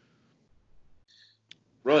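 A short pause in conversation, near quiet, broken by one short sharp click about one and a half seconds in; then a man starts speaking.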